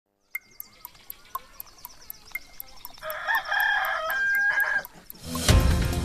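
A rooster crowing about three seconds in over a fast, even ticking of about four ticks a second, like a clock counting down. Music with drums starts near the end.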